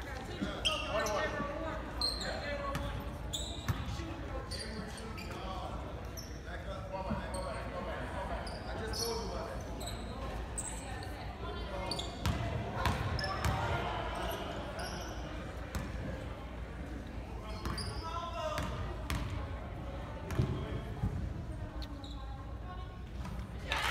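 Spectators' and players' voices chattering in a large echoing gym, with a basketball bouncing on the hardwood floor every so often.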